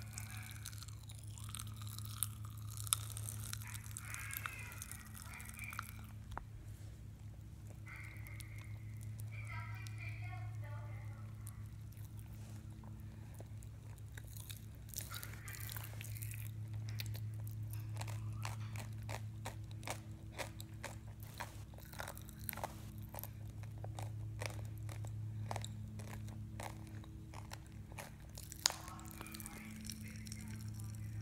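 Pop Rocks popping candy crackling and crunching while being chewed in the mouth: a dense run of small, irregular pops and crunches that thickens in the second half. Underneath is a steady low hum, and a few muffled mouth sounds come in the first ten seconds.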